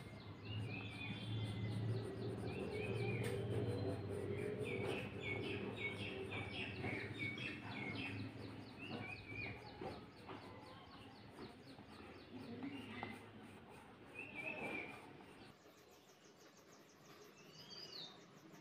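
Small birds chirping in the background: a quick flurry of short, falling chirps a few seconds in, then scattered calls, over a low steady hum that stops a couple of seconds before the end.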